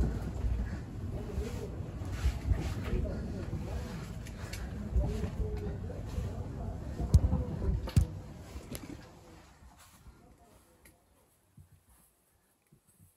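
Muffled rubbing and knocking of a handheld camera being carried down a stone-lined well shaft, with faint voices, and a couple of sharp knocks near the end. The sound then fades almost to silence.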